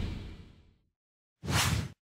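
Whoosh sound effects from an animated logo intro: the tail of a loud whoosh fades away in the first half second, then after a moment of dead silence a second, shorter whoosh comes in about a second and a half in and cuts off abruptly.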